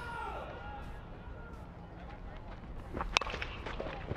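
Metal baseball bat striking the ball once, a single sharp ping about three seconds in, over low ballpark ambience.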